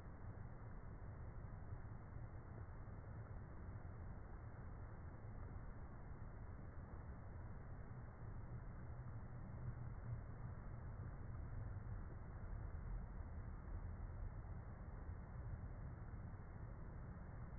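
Faint, steady background noise: a low rumble with a light hiss above it and no distinct events.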